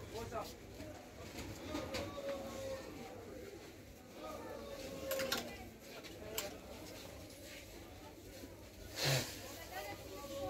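Indistinct voices in the background of a shop, on and off, with a few faint clicks and a louder knock about nine seconds in.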